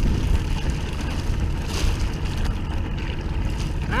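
Boat engine running steadily at idle, with water splashing and dripping as a wet cast net is hauled up out of the water beside the hull, and a louder splash near the middle.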